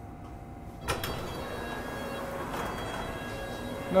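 Sliding passenger doors of a London Underground Metropolitan line train opening at a station stop, starting with a sharp clunk about a second in and followed by a steadier, louder sound of the doors and the open doorway.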